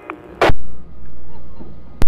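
A sharp click, then a steady low rumble that slowly fades, ended by a second click: noise on the live commentary audio feed.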